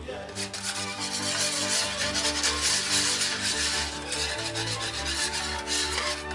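A fork scraping and stirring sauce against the bottom of a metal baking dish, a continuous rasping rub, over background music.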